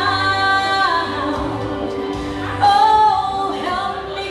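A solo voice singing into a microphone, holding long notes: one at the start and a louder one about two and a half seconds in.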